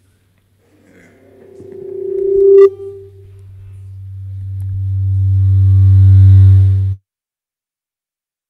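PA system feedback through the hall's microphones. A ringing tone builds for about two seconds and breaks off suddenly, then a low, buzzy hum swells for about four seconds and cuts off abruptly.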